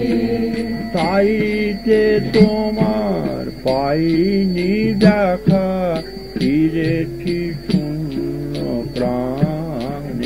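Devotional kirtan singing: a voice sustaining ornamented notes that glide up and down, over light percussion strokes about two a second.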